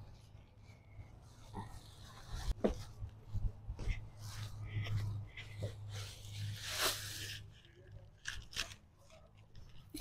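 Rustling and crackling of leafy galangal and ginger stalks being carried and set down on the grass, with scattered soft handling noises over a faint steady low hum.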